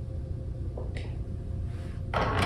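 Low steady room hum with a single short click about a second in, from a small push button being pressed.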